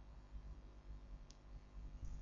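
Faint low room hum with one short, sharp click about a second and a half in.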